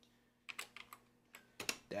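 Typing on a computer keyboard: a run of quick keystrokes about half a second in, then another run near the end.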